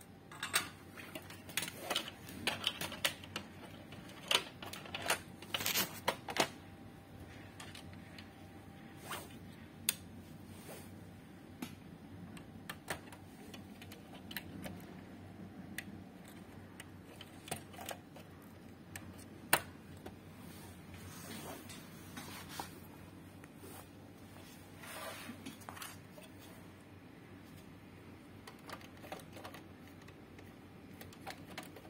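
Irregular clicks and knocks of hands refitting parts in an open metal amplifier chassis, seating the circuit board and pushing a ribbon-cable connector into place. The clicks come thick for the first several seconds, then only now and then.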